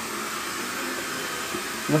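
Steady whirring hiss of a small electric blower motor running at constant speed, with a voice starting at the very end.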